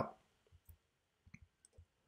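A few faint, short clicks scattered over about a second and a half, with near silence between them.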